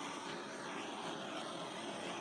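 Handheld gas torch burning with a steady hiss as its flame is swept over wet white paint on a canvas to pop the air bubbles.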